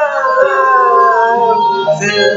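A long sung note, held and sliding slowly downward in pitch, over a pop song playing.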